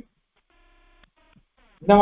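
A near-silent pause in a man's spoken lecture with a faint electronic tone sounding for about half a second, followed by a few fainter short blips. The man's voice resumes near the end.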